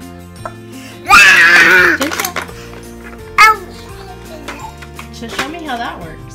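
Cheerful background music plays steadily while a young child lets out a loud squeal about a second in, lasting roughly a second, followed by a shorter cry a little later and some quieter vocal sounds near the end.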